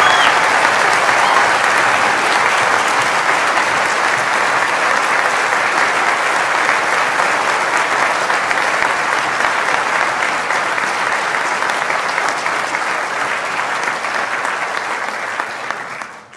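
A large seated audience applauding, a dense steady clapping that slowly thins out and dies away at the end.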